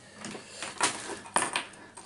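Handling noise from a MIDI lead and cables on a desk: a few light clicks and knocks over a soft rustle.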